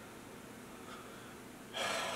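Quiet room tone, then near the end a person's loud breath that starts suddenly and trails off.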